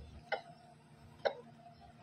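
Two faint short clicks, about a second apart, over a low background hum.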